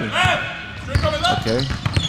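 Basketball dribbled on a hardwood gym floor: a few sharp bounces, heard with voices.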